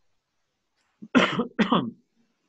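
A person coughing twice in quick succession, starting about a second in; the coughs are loud.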